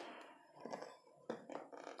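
Faint clicks and scraping of thin metal tie wire being twisted by hand around crossed rebar rods, with a couple of sharper clicks past the middle.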